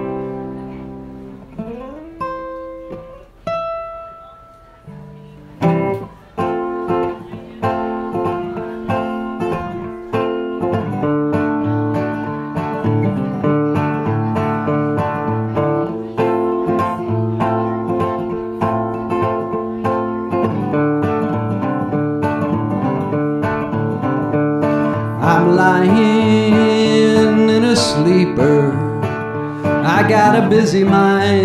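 Resonator guitar: a strummed chord rings out and fades at the end of one song. A few single high notes are plucked, then a picked intro to the next song starts about six seconds in and keeps going, growing louder and fuller near the end.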